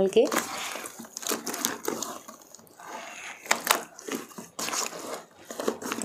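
A hand kneading and squeezing a cloth soaked in wet wall-putty slurry in a plastic bucket, making irregular wet squelching and crumpling sounds, with a few sharper squelches in the middle.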